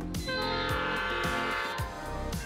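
Diesel locomotive horn, the EMD F40PHM-3C's chord, sounding one blast about a second and a half long as the train approaches a grade crossing, over background music with a steady beat.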